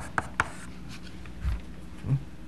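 Chalk on a blackboard: a few sharp taps in the first half second, then quieter work and a low thud about halfway through, over a steady low hum.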